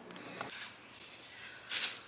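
Mostly quiet room tone, with one short hissing rustle near the end.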